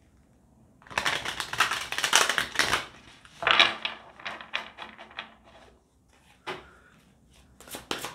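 An oracle card deck being shuffled by hand: two flurries of rapid card slaps and flutters, each about two seconds long, then a few scattered taps and a last short flurry near the end.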